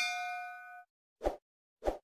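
Sound effects of an animated subscribe button: a bright bell ding as the notification bell is tapped, ringing out and fading within about a second, followed by two short soft pops.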